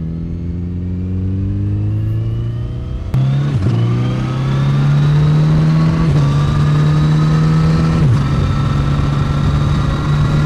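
Kawasaki Z900RS inline-four engine pulling under throttle, its pitch rising steadily. It gets louder about three seconds in, and the pitch drops slightly twice, near six and eight seconds in, as he shifts up.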